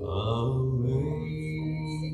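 A slow song: a low voice holding long notes that step upward over soft instrumental accompaniment.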